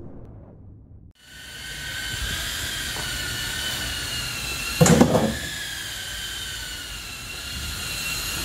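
Intro music fades out, then a power tool starts up and runs steadily with a high whine, trimming the fiberglass at the back end of a skiff hull. A single loud thump comes about five seconds in.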